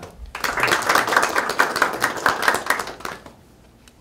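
A small seated group applauding an attendee as he is introduced. The clapping starts a moment in, runs for about three seconds and stops well before the end.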